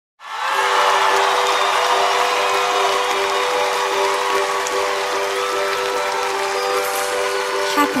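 Harp playing a song intro over held chord tones, with audience cheering at the start that fades away.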